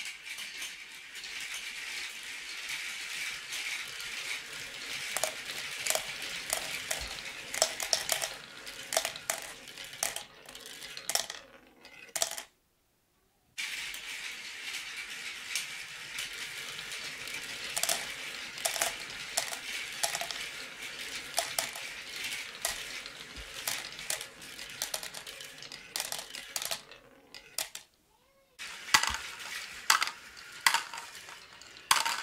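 Marbles rolling down a wooden-and-plastic marble run: a steady rolling rattle with many sharp clicks along the way. The sound breaks off abruptly twice, for about a second each time.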